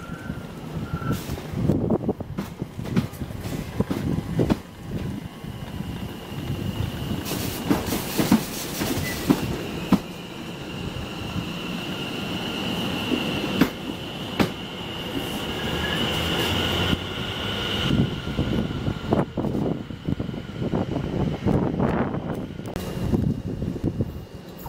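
London Overground electric train running slowly past at close range, its wheels clicking over the rail joints beneath a low rumble. A high steady wheel squeal builds through the middle and stops a little after the two-thirds mark, as the train slows at the platform.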